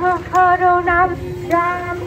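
A woman singing a devotional chant on the name Ram in long held notes, amplified through a horn loudspeaker.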